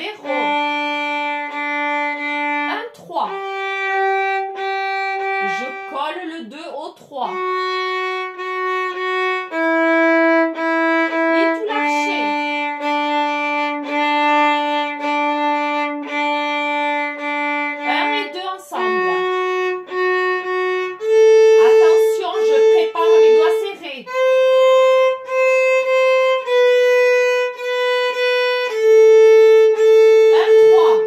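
Solo violin played with the bow, a slow exercise on G major arpeggios: single notes held for one to three seconds alternate with groups of short repeated notes, with brief breaks between phrases.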